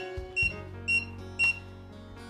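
ISEO smart electronic lock cylinder giving four short, high beeps about half a second apart, over soft background music. The beeps are the lock's signal that a card has been presented to switch Passage Mode off.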